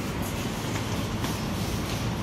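Steady rumbling supermarket background noise with no distinct events, picked up by a phone carried at walking pace.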